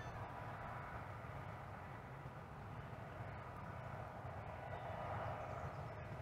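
Faint, steady outdoor background rumble with a faint machine hum.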